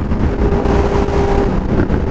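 Honda CB600F Hornet's inline-four engine running at a steady cruise, heard with loud wind buffeting on the helmet microphone.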